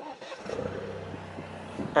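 Alfa Romeo Giulia's engine starting at the push of the start button: it catches within about half a second and settles into a steady idle.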